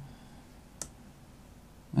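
A single computer mouse click about a second in, over quiet room tone.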